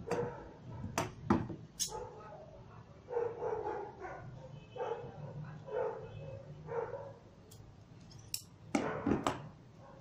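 A dog barks repeatedly, about once a second, through the middle. Sharp clicks and snips of scissors cutting peacock feathers come near the start and again near the end.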